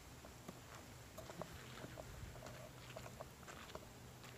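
Near silence: faint outdoor ambience with a few soft, scattered clicks and a faint steady low hum.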